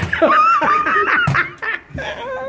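A person laughing loudly in one long peal that trails off about a second and a half in.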